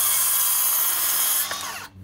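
Cordless circular saw cutting through a 2x4, its motor whine steady under the loud rush of the blade in the wood; about one and a half seconds in, the pitch falls as the saw winds down, and it stops just before the end.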